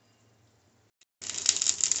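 Near silence, then, about a second in, a loud sizzle with crackling starts: chili peppers, tomatoes and garlic cloves roasting in a hot cast iron skillet.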